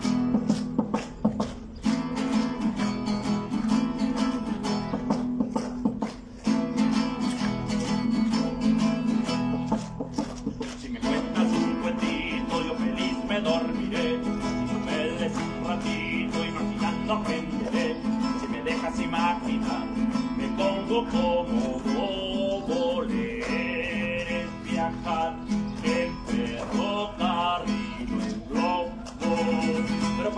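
Acoustic guitar strummed in a steady rhythm, with hands clapping along. From about twelve seconds in, voices join over the guitar.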